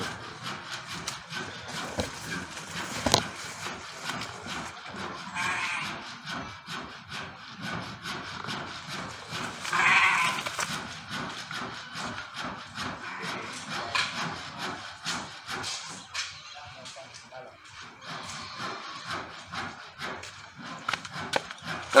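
Outdoor background of scattered rustles and clicks, with a couple of brief animal calls about six and ten seconds in.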